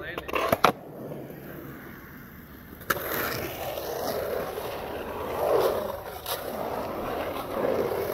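Skateboard on a concrete bowl: a few sharp clacks in the first second, then a hard knock about three seconds in as the board drops into the bowl, followed by a steady wheel-rolling rumble that swells and eases as the skater carves the transitions.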